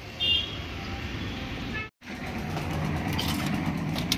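Street traffic noise with one brief, high-pitched vehicle horn toot near the start, the loudest moment. About two seconds in, the sound cuts out for an instant, and a steadier low hum with a few light clinks follows.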